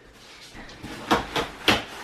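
A few light clicks and knocks from a pram being handled on a hard floor, three in quick succession about a second in.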